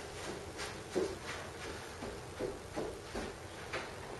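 Faint, irregular soft knocks and shuffling from someone moving about and handling things in a small room, out of sight of the microphone.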